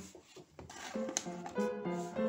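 Background music comes in about a second in, with a sharp click shortly after it starts.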